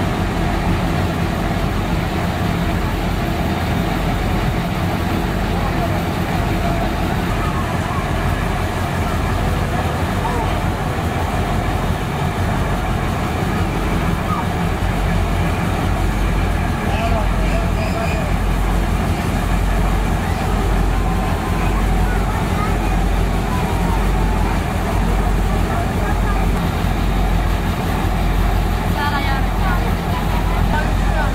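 VR Dr13 diesel locomotive standing with its diesel engines idling, a steady, even drone. Faint voices are heard over it.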